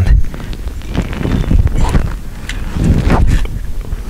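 Camera and microphone handling noise: a low rumble with scattered short knocks and rustles as the camera is moved under the car.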